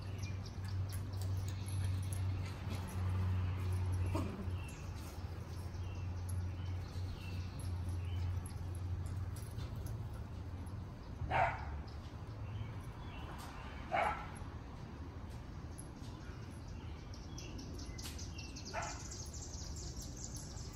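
Beagle barking twice, sharp single barks about two and a half seconds apart, then a fainter bark near the end. A steady low hum runs under the first half.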